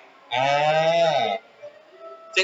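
A man's voice holding one drawn-out vowel for about a second, its pitch steady and then dipping at the end.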